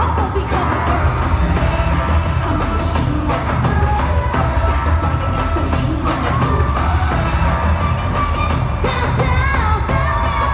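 Loud amplified pop music with heavy bass and a singing voice, heard from the audience in an arena.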